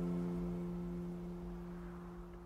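Final strummed acoustic guitar chord of the song ringing out, its held notes fading steadily with no new strum.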